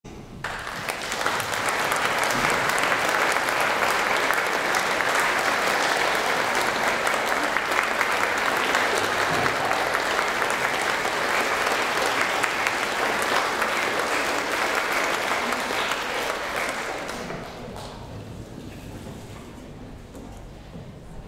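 Concert audience applauding, starting about half a second in, holding steady, then dying away about seventeen seconds in.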